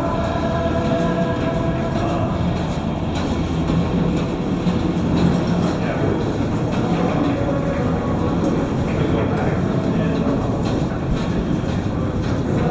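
Air-cooled V-twin cruiser motorcycle engine idling steadily, a low uneven rumble.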